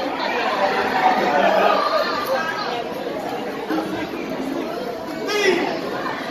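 Spectator chatter in a large hall, many voices talking over one another. One higher voice calls out above the rest near the end.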